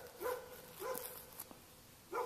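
A puppy giving a few short, faint whines about half a second apart, each rising briefly and then holding its pitch.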